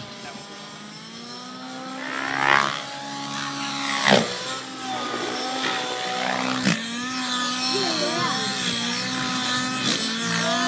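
Nitro RC helicopter's glow engine and rotor, the engine pitch rising and falling with loud blade whooshes about two and a half, four and nearly seven seconds in, as it throws hard 3D manoeuvres.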